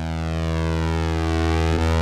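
Roland GR-33 guitar synthesizer holding a sustained synth note played from the guitar, slowly swelling in level, with a slow sweep moving through its upper overtones.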